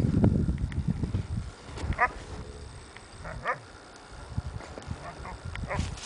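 Close rumbling and rubbing noise against the microphone, then a dog gives short high yips, twice about a second and a half apart and once more faintly near the end.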